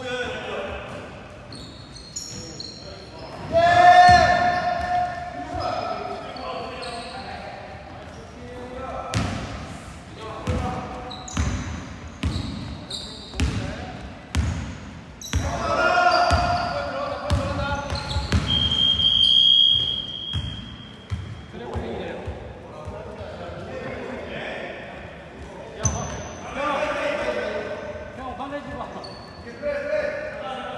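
Basketball bouncing on a hardwood gym floor, repeated sharp thuds echoing in a large hall, with players shouting now and then. A short high squeal comes about two thirds of the way through.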